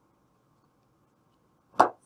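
Near silence, then a single short, sharp knock near the end.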